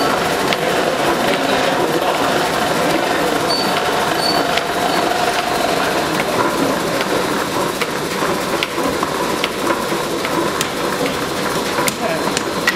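Belt-driven chain hammer and its drive running in the forge, a loud, steady, fast mechanical clatter.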